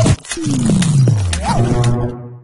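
News channel logo sting: a sudden hit, then a deep tone sweeping steadily downward for about a second, with sharp clicks and a short rising-and-falling tone near the end.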